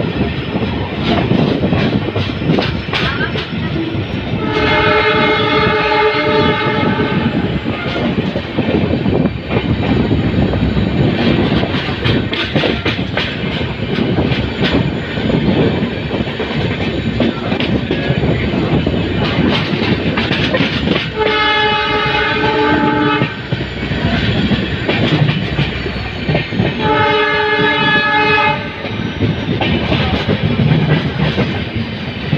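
Passenger train running at speed, with a steady rumble and clatter of wheels on the rails. Its WDP4D diesel locomotive's horn sounds three times: a long blast about five seconds in, then two shorter blasts in the last ten seconds.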